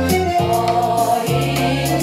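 A women's vocal ensemble singing into microphones, holding long notes over amplified accompaniment with a repeating low bass line.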